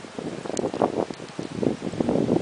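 Wind buffeting the camera microphone in uneven gusts, with a small click about half a second in.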